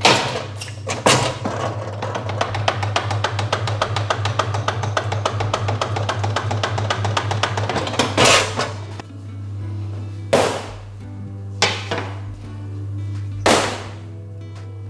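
Bun divider-rounder machine rattling rapidly for about seven seconds as it rounds the dough pieces, then several sharp knocks of metal plates and trays. Background music and a steady low hum run underneath.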